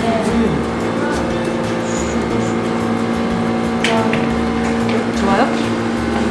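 Background music with a steady held tone over low notes that change every half second or so, with brief snatches of voices.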